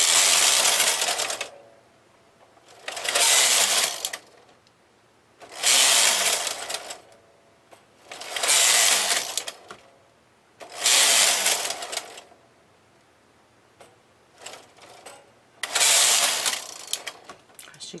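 Lace carriage of a Brother KH970 knitting machine pushed back and forth along the metal needle bed, transferring stitches for a lace pattern. Six passes, each a rattling sweep of about a second and a half, with pauses between them.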